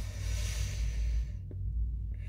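A long, airy breath out of pipe smoke lasting about a second and a half, ending with a small click.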